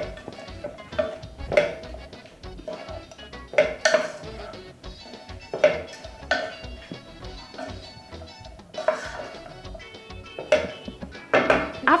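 Wooden spoon stirring chopped raw goat meat and seasonings in a pot with no liquid yet, making irregular knocks and scrapes against the pot, over background music.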